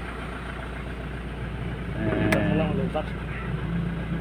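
Isuzu 4JG2 four-cylinder diesel engine idling steadily, with a brief voice and a click about two seconds in.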